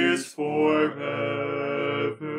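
Four-part a cappella male-voice hymn singing, all parts sung by one man in overdubbed layers, in slow held chords. The chord breaks off briefly about a quarter second in and then comes back as sustained chords that change about a second in, in the hymn's closing line.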